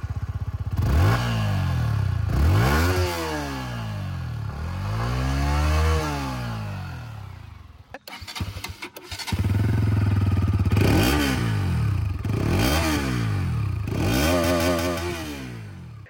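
Yamaha MT-15's 155cc single-cylinder engine idling with two throttle blips; after a short break near the middle, the Bajaj Pulsar NS200's 199.5cc single-cylinder engine idles and is blipped three times.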